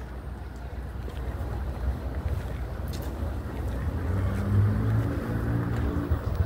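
Low street-traffic rumble with wind on the microphone; from about four seconds in, a vehicle engine's low hum grows louder.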